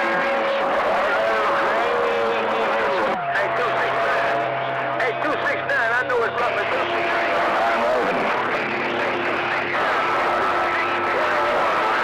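11-meter CB/freeband radio receiving several distant stations at once over heavy static: garbled, overlapping voices with steady heterodyne whistles that come and go, typical of crowded skip conditions.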